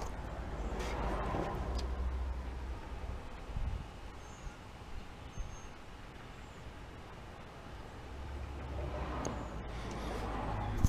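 Rover SD1 electric fuel pump running, powered straight from the battery through a power probe: a faint, steady low hum. It shows that the pump itself works when given power.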